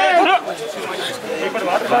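Several men talking over one another, a group's chatter, with one voice loudest at the very start.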